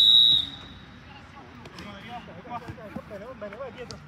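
Referee's pea whistle, one short shrill blast of about half a second, signalling the kickoff from the centre spot. Players shouting follows.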